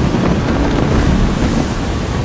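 Storm at sea: heavy ocean waves and strong wind on a sailing yacht, loud and steady throughout.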